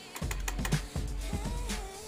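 A quick run of irregular clicks and taps, handling noise as a plastic light-up disco stick studded with crystals is moved against and around the phone, over a steady low hum.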